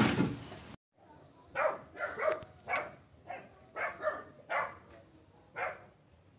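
A dog barking about nine times at an uneven pace. It follows a loud noise that cuts off abruptly within the first second.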